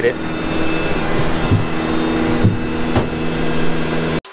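A steady machine drone with several held hum tones, broken by a few dull low thumps about halfway through and again shortly before the end.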